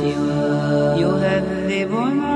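An Arabic nasheed sung by voice, drawing out long held notes that bend and glide in pitch.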